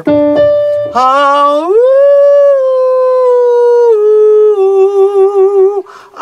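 A man singing a vocal exercise for high notes: after a short steady note, his voice glides up to a high held note about a second in, then steps down in two stages to a lower note with a slight waver.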